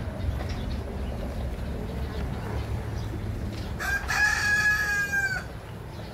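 A rooster crows once, a single call of about a second and a half starting about four seconds in.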